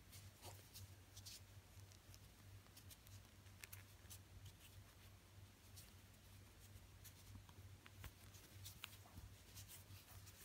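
Faint rustling and small scattered clicks of a plastic crochet hook pulling thick T-shirt yarn through stitches while single crochet is worked, over a steady low hum.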